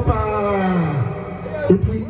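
A voice calling out one long drawn-out note that falls in pitch over about a second, then more broken voice sounds.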